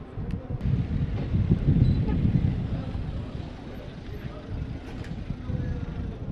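Field-recorded outdoor ambience dominated by wind rumbling on the microphone, with faint voices and a few light clicks.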